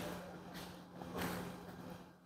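Faint, soft puffs of a man drawing on a cigar, a few times, over a low steady hum.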